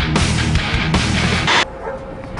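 Loud, heavy rock-style background music that cuts off abruptly about one and a half seconds in, leaving a much quieter background.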